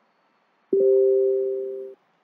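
Computer alert chime: a two-note electronic tone that starts sharply under a second in, is held for just over a second, fading gradually, then cuts off.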